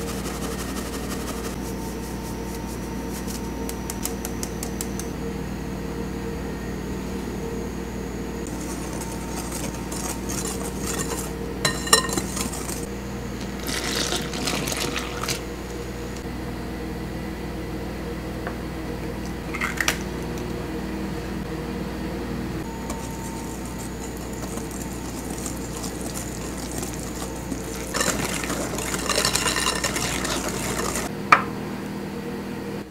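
Kitchen baking work in a glass mixing bowl over a steady low hum: light rapid tapping of a mesh sieve as flour and cocoa are sifted at the start, scattered clinks of utensils and glass in the middle as milk is poured into the dry ingredients, then a wire whisk beating thick chocolate cake batter against the bowl near the end.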